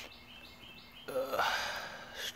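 A man's breathy sigh, about a second long, starting about a second in, with faint bird chirps before it.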